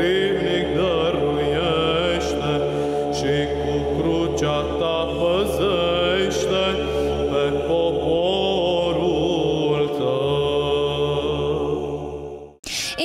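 Theme music: a single voice chanting a slow, ornamented melody over a steady sustained drone.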